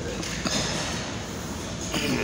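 Steady, even hiss of gym room background noise, without any distinct knock or clank.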